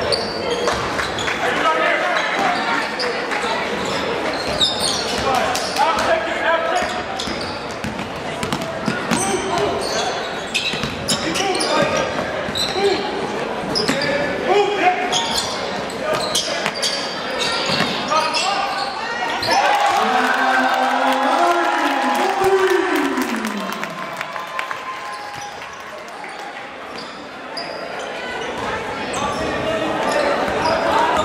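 Basketball game in a gymnasium: a ball bouncing on the hardwood floor and quick knocks and clicks from play, over crowd chatter and shouts echoing in the large hall. A little past twenty seconds in, a drawn-out shout drops in pitch.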